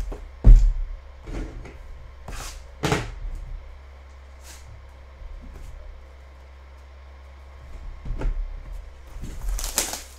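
A cardboard trading-card hobby box and cards being handled on a tabletop. A sharp knock comes about half a second in, then scattered taps and rustles, with a quieter stretch in the middle.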